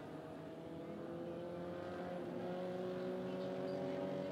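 A vehicle engine droning steadily at low speed. Its pitch rises slowly and it grows slightly louder across the few seconds.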